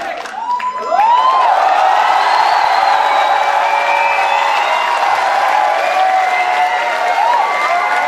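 Audience cheering, whooping and applauding as the music cuts off, swelling sharply about a second in and staying loud, with many voices shouting over one another.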